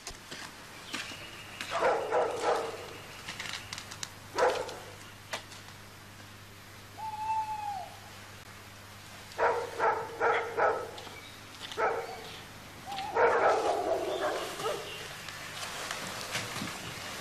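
A dog barking in short bursts: a couple of barks early, a quick run of four in the middle and a longer spell near the end. A single short arching call, like an owl's hoot, sounds about seven seconds in.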